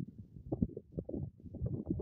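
Wind buffeting the microphone in gusts, an uneven low rumble that rises and drops several times a second.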